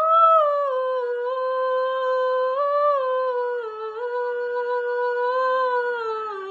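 A girl singing solo, holding long notes on open vowels that step and glide gently up and down in pitch, with no breaks.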